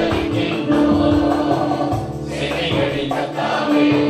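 Mixed choir of men and women singing a Tamil gospel song together, holding long notes.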